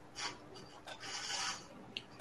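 Faint rustling and rubbing noises on a video-call microphone: a few short, hissy rasps, one near the start and a longer one from about one second in.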